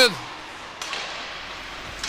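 Ice hockey shot: a single sharp crack of stick on puck about a second in, over the steady background noise of an indoor ice rink.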